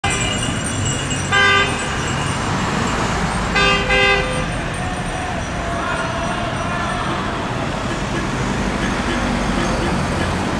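Vehicle horn honking over steady road-traffic noise: one short blast just over a second in, then a quick run of short toots a couple of seconds later.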